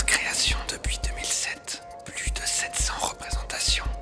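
Background music between narration lines: deep bass pulses at an uneven pace, a faint held tone, and breathy whispering.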